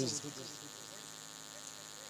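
A steady, faint high-pitched buzz with a low hum under it fills a pause in a man's speech over a microphone; a word ends just at the start.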